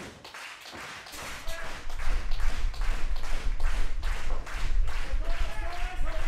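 Rhythmic clapping in unison, about three claps a second, starting about a second in, over a low hum.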